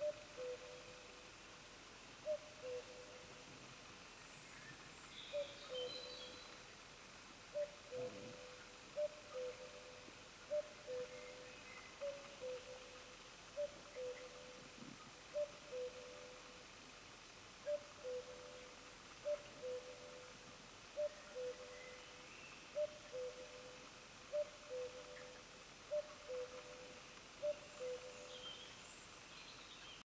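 A bird repeating a two-note falling call over and over, about one call every second and a half, with a few fainter, higher chirps among the calls.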